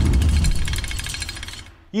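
Tail of a logo intro sting: a deep low boom with a fast, even metallic clicking shimmer above it, fading out over about a second and a half. A man's narrating voice starts right at the end.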